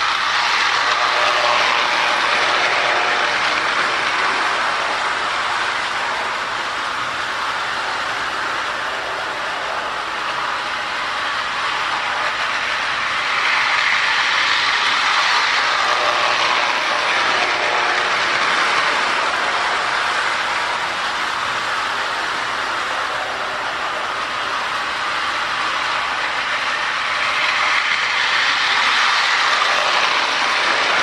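Marx tinplate model train running on tinplate track: the E7-motored boxcab's gearing and wheels give a steady whir and rattle on the rails. It swells each time the train passes close, about every 14 seconds: near the start, halfway through and near the end.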